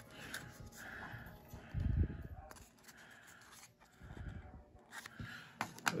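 Faint handling noises of tiny cardboard toy packages: light rustles and ticks as a miniature box is turned in the fingers, with a soft low bump about two seconds in and another near four seconds as things are moved on the wooden table.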